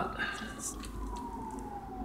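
Distant siren, a single thin tone falling slowly and steadily in pitch.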